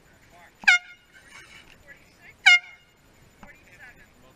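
Race committee air horn giving two short, loud blasts about two seconds apart, each dipping slightly in pitch as it starts, with faint voices in the background.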